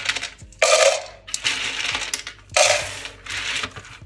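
Handfuls of dry roasted peanuts dropped into a clear plastic jar and stirred on a tray, rattling and clattering against the plastic. The two loudest pours come about half a second and two and a half seconds in.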